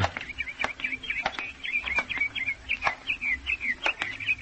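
Birdsong sound effect in a radio play: a quick run of short, high bird chirps, several a second, with a few faint clicks, marking a scene in a park.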